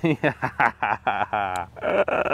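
A man laughing in a run of short bursts.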